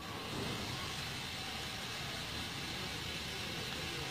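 Steady, even background noise with a low rumble and a faint hiss, and no distinct sounds in it.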